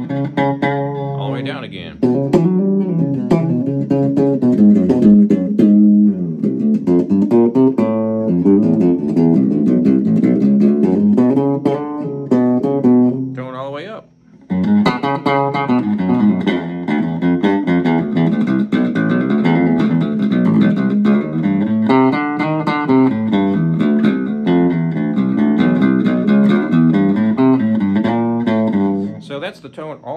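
Squier Vintage Modified Jaguar Bass Special SS short-scale electric bass played through a little Cube practice amp. He plucks a continuous bass line on the rear pickup with the tone rolled all the way down, giving a dark, round sound that sounds like an upright bass. The playing stops briefly about fourteen seconds in, then goes on.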